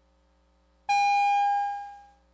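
Division bell summoning members to a vote, sounding once: a single ringing tone that starts suddenly about a second in and fades away over about a second.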